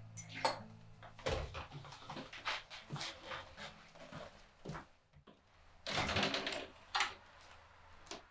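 A wooden chair scraped back and scattered footsteps walking away, light knocks and scuffs over the first five seconds. About six seconds in comes a short rattling burst, then a sharp click a second later, like a door handle and latch.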